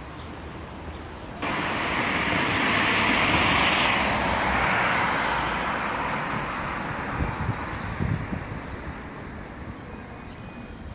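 A vehicle passing in street traffic: a broad rushing noise that starts suddenly about one and a half seconds in, swells and then fades away over several seconds, with a couple of low thumps near the end.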